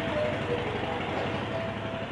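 Steady background noise and low hum with a few faint, wavering thin tones, no distinct events.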